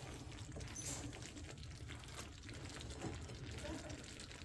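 Faint wet sounds of mushroom gravy simmering in a stainless skillet, with soft liquid slops and small ticks as a spatula moves through the gravy.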